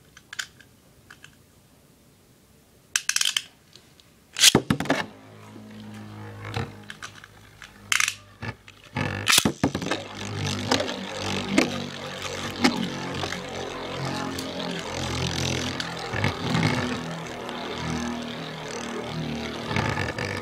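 Two Beyblade spinning tops launched into a plastic stadium, with two short sharp launch noises about three and four and a half seconds in. The tops then spin with a steady whirring scrape against the plastic floor, with scattered clicks.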